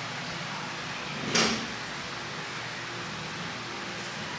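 One short crinkle of newspaper wrapping about a second and a half in, over a steady low room hum.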